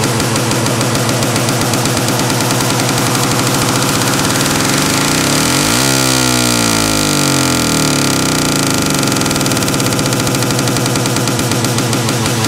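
Progressive psytrance at 140 bpm: a dense, buzzing synth line pulsing rapidly and evenly. About halfway through, a pitch sweep makes the tones fan out and glide.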